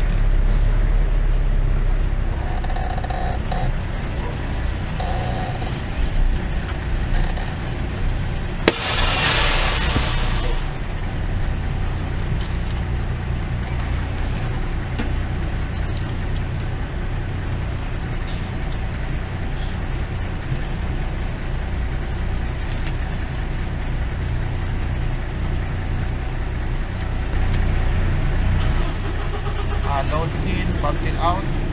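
Semi-truck diesel engine running with a steady low rumble heard from inside the cab. About nine seconds in, a sharp click and then about two seconds of loud hissing air from the truck's air brakes as it comes to a stop.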